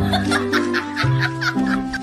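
Background music with held notes, over a person laughing in a quick run of short bursts.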